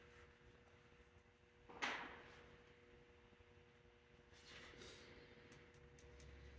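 Near silence with a faint steady hum. A brief soft scrape about two seconds in and faint scratching later, from a needle tool scoring soft, freshly thrown clay.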